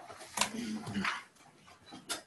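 Office chairs creaking and shifting as several people stand up from a desk, with a sharp knock about half a second in and a short squeak just after it.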